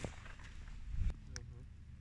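Low rumble of wind on the microphone and hand handling noise, with a few knocks and a small splash about a second in as a northern pike is lowered back into shallow water by hand.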